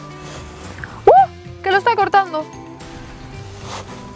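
Soft background music under a woman's voice: a short vocal sound about a second in, then a few quick words.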